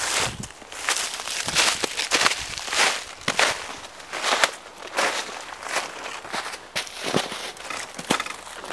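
Footsteps crunching through thin snow over dry leaf litter, about two steps a second.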